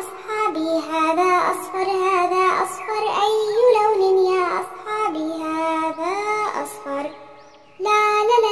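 A children's song: a child's voice singing a melody over backing music, breaking off briefly just before the end.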